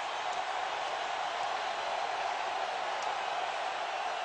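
Large stadium crowd cheering in a steady roar after a big defensive hit.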